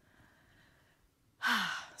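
Near silence, then about a second and a half in a woman lets out a short, breathy sigh with a brief falling voiced tone.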